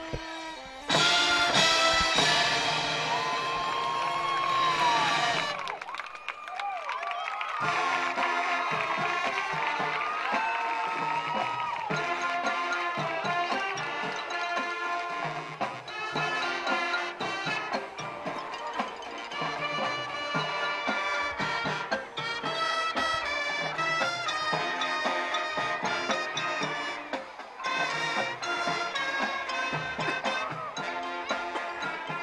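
High school marching band playing on the field, brass with drums. A loud held chord comes in about a second in and breaks off around six seconds, then the band carries on with brass lines over a steady drum beat.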